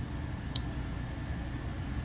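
A folding knife snapping shut with a single sharp click about half a second in: a Benchmade 945 Mini Osborne fitted with a 555 Mini Griptilian sheepsfoot blade. A steady low hum runs underneath.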